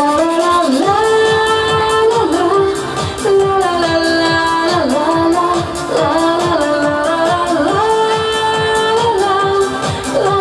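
A woman singing a Tatar pop song into a microphone, holding long notes over an amplified backing track with a steady beat.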